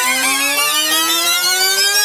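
Synthesized intro jingle: a loud, steady electronic tone rising slowly in pitch, with quick repeating warbling notes over it.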